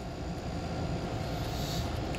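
Steady low rumble with a faint hiss: continuous background noise in a cylinder-head porting shop, with no distinct events.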